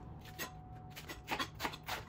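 Chef's knife cutting through crisp iceberg lettuce and tapping the cutting board: one cut, then a quick run of about four cuts in the second half.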